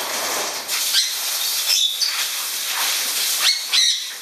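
Pet parrots calling with short, sharp, high squawks several times over a steady hissing rush of noise.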